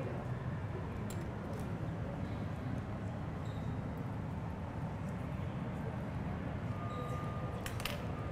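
Steady low background hum of a large public room, with a few faint clicks: one about a second in and two close together near the end.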